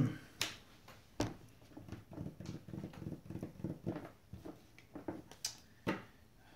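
Trading cards being put down and slid on a cloth playmat: a few sharp taps, the loudest near the end, with a faint voice in the background.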